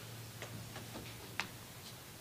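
Faint clicks and light knocks of a pianist settling at a grand piano, with her steps, the music set on the stand and the bench as she sits, the sharpest knock about one and a half seconds in. A steady low hum runs underneath.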